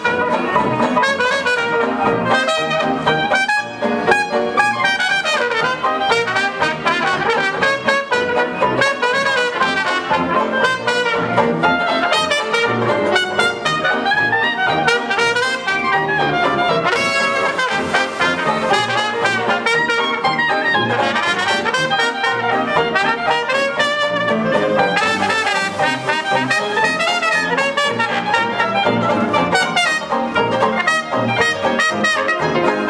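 Traditional hot-jazz band playing live: trumpet lead with trombone, piano and rhythm section, continuous ensemble music with a steady beat.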